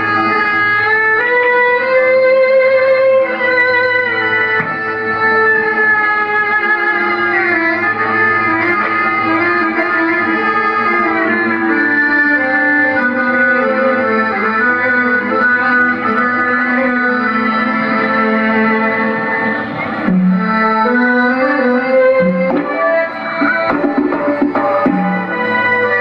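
Traditional Malay Zapin dance music: a sustained, wavering melody line over a steady accompaniment, with a brief dip about twenty seconds in before it carries on.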